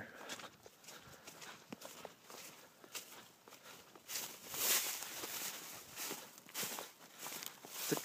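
Footsteps through dry grass: an uneven run of steps with rustling, louder for a while about halfway through.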